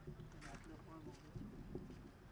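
Faint voices of people talking in the background, with a few small clicks.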